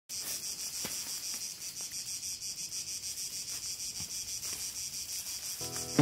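Cicadas singing in the summer woods: a steady, evenly pulsing high-pitched chorus of about eight pulses a second.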